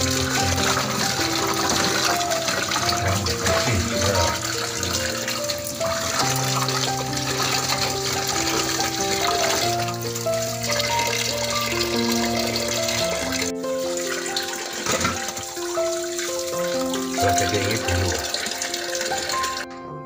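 Tap water running into a pot of peeled cassava pieces, splashing as they are rinsed by hand, under melodic background music. The water stops just before the end.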